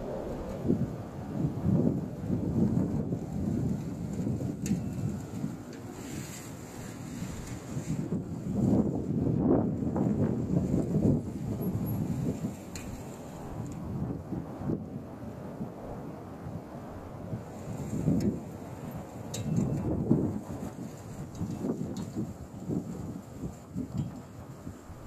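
Strong wind buffeting the microphone: a low, gusty rumble that swells and eases several times.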